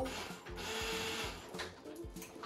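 Electric immersion blender motor running briefly for about a second, held up out of the sauce so it spins with nothing to blend, over background music with a steady beat.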